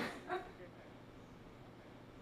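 A short shout in the first half second, then near silence: room tone.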